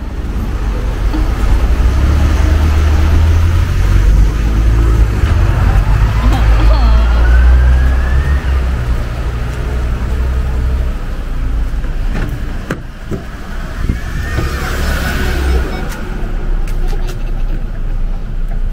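A motor vehicle's engine running close by, a steady low rumble that stops about sixteen seconds in.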